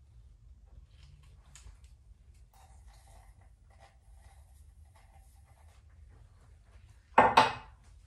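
A jar candle being lit and handled: faint rubs and small clicks over a low room hum, then a brief, much louder sound near the end.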